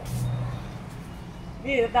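Low rumble of a passing road vehicle that fades over the first second. A voice starts talking near the end.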